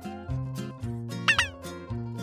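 Background music, with a short cat meow sound effect about a second in, its pitch rising and then falling.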